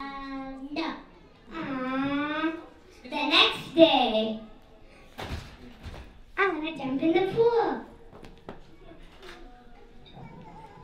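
Young girls' voices through a microphone: drawn-out held vocal sounds, then short exclamations, in several spells with pauses between.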